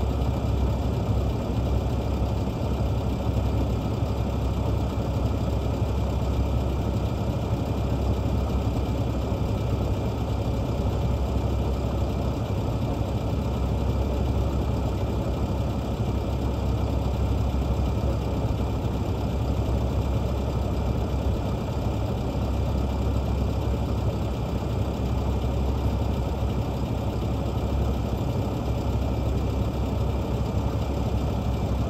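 Heavy diesel engine idling steadily: an even, low rumble that does not rev or change.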